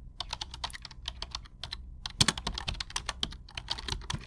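Computer keyboard keys clacking in quick, irregular runs, with a short pause in the middle and one sharper click just after it.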